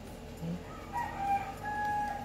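A rooster crowing, beginning about a second in on a drawn-out call that steps down in pitch and holds a long final note.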